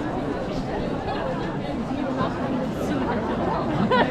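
Crowd chatter: many people talking at once in a steady babble of voices.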